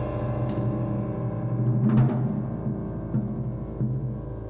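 Drum kit played with soft felt mallets: muted rolls on the drums, with a louder accent about two seconds in, over lingering piano notes.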